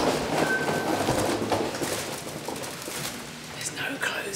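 Wheeled suitcase rolling over a tiled floor with footsteps, a rumbling noise that fades away as the walking stops. There is a brief high beep about half a second in.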